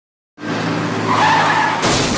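Cartoon sound effect of a vehicle engine running and its tyres screeching in a skid, ending in a sudden loud burst just before the end, the start of a crash.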